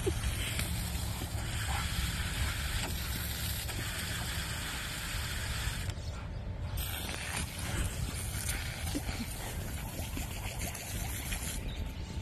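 Garden hose spray nozzle running, a steady hiss of water that cuts out briefly about six seconds in and then returns, over a constant low rumble.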